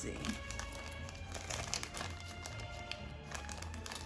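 Small clear plastic zip-lock bags of acrylic nail tips crinkling irregularly as hands sort through them and pick at them, over quiet background music.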